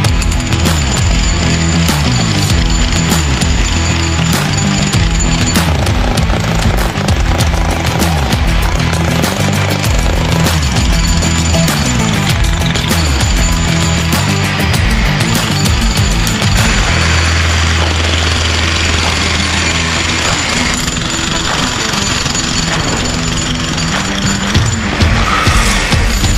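Harbor Freight electric jackhammer hammering into a concrete block, steady repeated blows, with music playing over it throughout.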